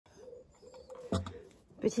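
A dove cooing in the background: a low, steady note held and repeated. A brief louder sound comes about a second in.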